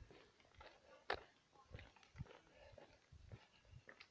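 Near silence with a few faint, irregular taps and rustles, the sharpest about a second in: handling noise from a hand-held phone and footsteps on a pavement.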